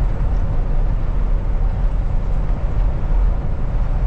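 Kenworth T680 semi truck heard from inside the cab while cruising on the highway: a steady low rumble of engine and road noise.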